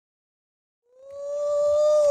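Silence, then about a second in a high-pitched voice fades in on a drawn-out "ooh", held on one steady note.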